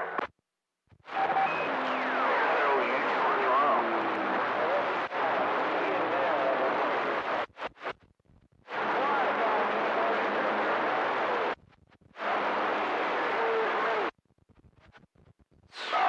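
CB radio receiver on the 11-metre band with its squelch opening on weak, noisy skip signals: three long bursts of hiss with faint garbled voices and gliding whistle tones beneath, each cutting off abruptly into near silence.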